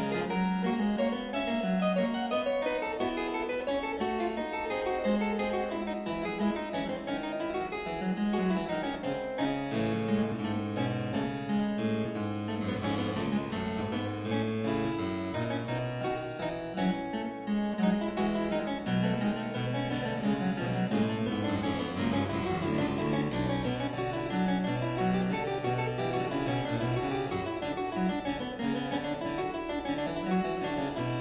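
Solo improvisation on a sampled harpsichord, a Hauptwerk virtual instrument built from recordings of a 2005 Mietke harpsichord, in quick running figures. About ten seconds in, the bass line moves down into a lower register.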